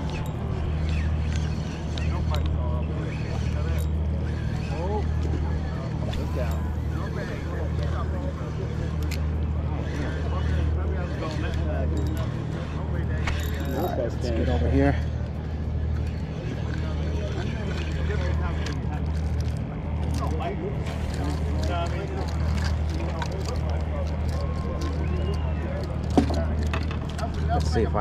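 Spinning reel being cranked to bring in a hooked fish, over a steady low rumble that swells and dips about once a second and the distant chatter of people on the pier.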